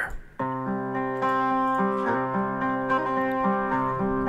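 Instrumental backing track of the song starting about half a second in, with held chords that shift a few times.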